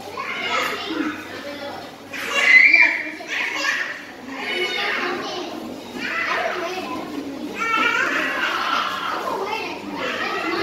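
A group of young girls chattering and calling out over one another, with an excited high-pitched burst about two and a half seconds in.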